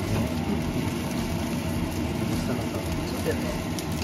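Fried rice with cabbage sizzling in a frying pan as a wooden spatula stirs and scrapes it, over a steady low drone.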